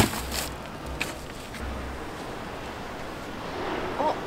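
Wind buffeting the microphone outdoors, rumbling in patches during the first two seconds, with a sharp knock at the very start and a lighter one about a second in.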